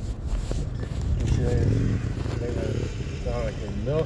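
Steady low rumble of a car's engine and road noise heard inside the cabin, with a person talking quietly over it partway through.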